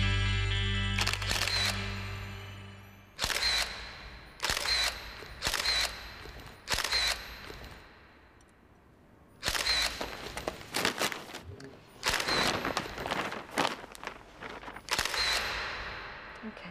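Theme music dying away, then a camera taking about ten flash photographs, roughly one a second with a short pause midway. Each shot is a sharp click with a brief high chirp, and some are followed by a faint rising whine.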